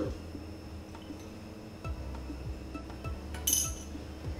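Background music with a steady beat. Near the end, a metal spoon clinks briefly against the stainless steel mixing bowl of a Thermomix, ringing a little.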